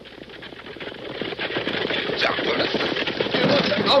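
Radio-drama sound effect of a stagecoach and its galloping team approaching: rapid hoofbeats that grow steadily louder.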